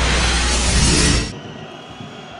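Digi Sport TV channel ident: a loud whooshing jingle with deep bass that cuts off about a second and a half in, leaving faint stadium crowd ambience from the match broadcast.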